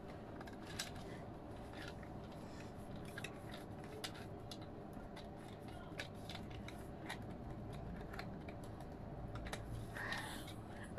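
Faint scattered clicks and rustles of hands handling a soft yellow toy and brushing against a cardboard box.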